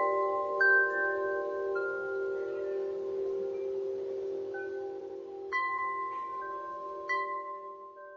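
Bell-like chimes ringing over a held chord, with fresh strikes about half a second in, near two seconds, and twice more in the last few seconds.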